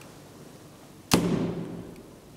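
Manual swing hall door of an old Otis traction elevator swinging shut with a single slam about a second in, followed by a short low ring that dies away.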